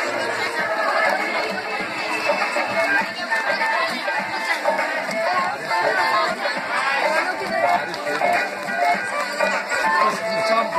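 Music playing over a crowd of voices chattering and calling out.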